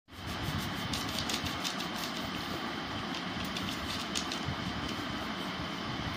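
Faint, irregular scratching of a crayon colouring on paper, over a steady low background rumble.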